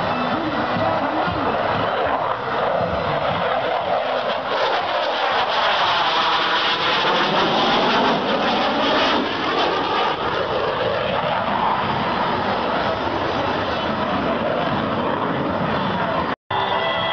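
Saab JAS 39 Gripen jet fighter flying a display pass, its single turbofan making a continuous jet noise that swells to its loudest about halfway through, with a sweeping whoosh as it passes, then eases off.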